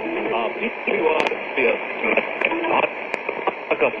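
Shortwave AM broadcast of Trans World Radio India on 12160 kHz, heard through a Sangean ATS-909X receiver's speaker: a voice speaking in narrow, muffled AM audio over a steady hiss, with a few sharp static clicks.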